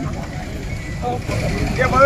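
Men's voices talking close by over a steady low rumble, with the talk getting louder near the end.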